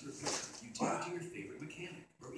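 Television commercial playing in the room: indistinct voices with two short bursts of rushing noise, one just after the start and one about a second in.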